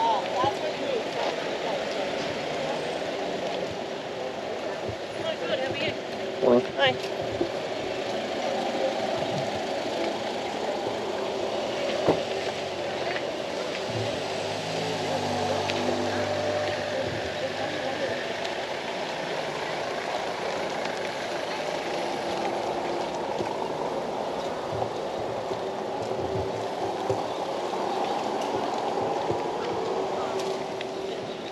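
Outdoor ambience of indistinct voices of people nearby, with a vehicle engine passing around the middle and a few short knocks early on.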